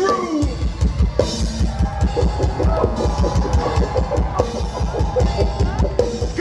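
Live drum kit solo on a DW kit: rapid, steady bass-drum strokes with cymbal and snare hits over them, starting about half a second in as a rapped line ends.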